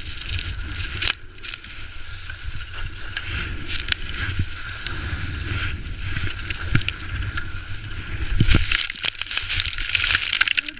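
A skier sliding and tumbling down a steep snow slope after losing an edge: snow sprays and scrapes against the action camera, wind rumbles on the microphone, and scattered knocks come as the camera hits the snow, loudest about eight and a half seconds in.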